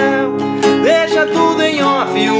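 Capoed acoustic guitar strummed in a steady rhythm through a Dm–Am chord progression, with a man singing along.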